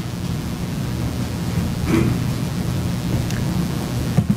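Steady hiss with a low electrical hum from the courtroom microphone feed, the noisy audio that the uploader blames on the courtroom mics. A faint short sound comes about two seconds in.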